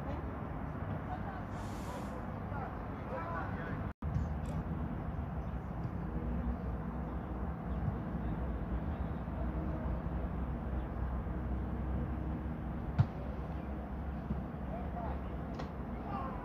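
Outdoor field ambience with a steady low rumble and faint distant voices, broken by a brief dropout at an edit about four seconds in. A single sharp knock comes about 13 seconds in.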